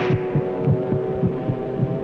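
Film soundtrack effect of a rapid heartbeat, low thumps several times a second over a steady droning tone. It stands for a shell-shocked soldier's racing heart during a panic attack.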